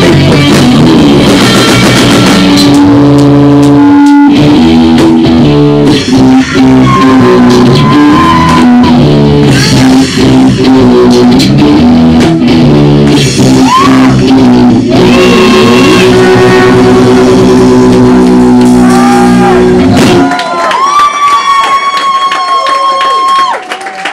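Rock band playing live and loud: electric guitar and drums with a man singing. About twenty seconds in, the band stops together and a single held high note rings on alone.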